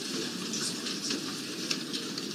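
Background noise of a crowded courtroom: a steady crackly hiss with faint rustling and a few small clicks.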